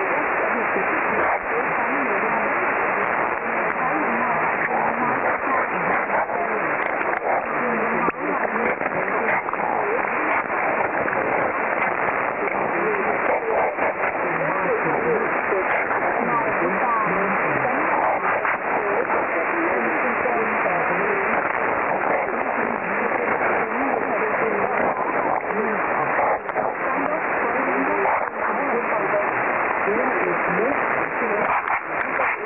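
Shortwave AM broadcast from Lao National Radio on 6130 kHz, picked up on an Icom IC-R75 receiver: a faint voice under steady, heavy static hiss, the audio thin and narrow-band.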